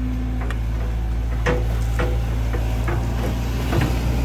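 Sumitomo SH long-reach excavator's diesel engine running with a steady low drone, with irregular short knocks and clicks from the working machine as the long arm swings out and the bucket goes into the water.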